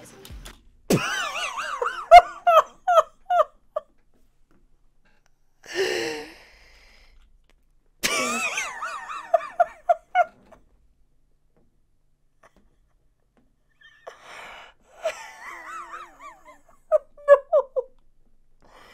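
A man laughing hard in three long bouts of quick 'ha-ha' pulses, with a gasping in-breath between the first two.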